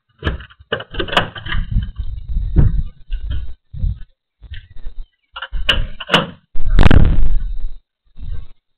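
A house front door being opened and shut, with a run of knocks, clicks and rubbing from a handheld pen camera being carried through it; the loudest thud and rumble comes about a second before the end.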